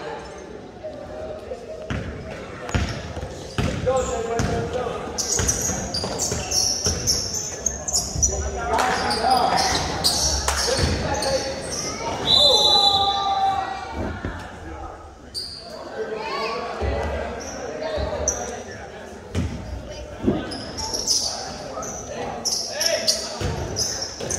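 A basketball bouncing on a hardwood gym floor during play, with sneakers squeaking and players and spectators calling out, all echoing in a large gym.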